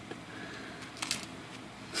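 Faint room hiss with a few light clicks about a second in: bent steel paper clips being set down on a hard work surface.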